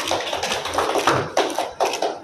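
A small group of people clapping by hand, many quick irregular claps overlapping.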